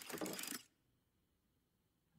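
A brief, faint clicking rattle that fades out within the first half second, then silence.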